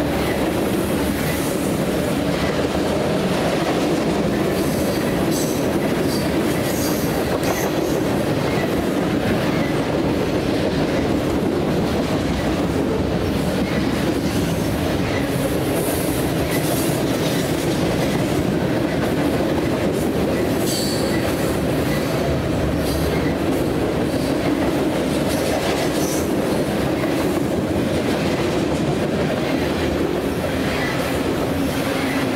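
A long mixed freight train of covered hoppers, tank cars and containers rolling steadily past, its wheels clattering over the rails, with brief high squeals from the wheels now and then.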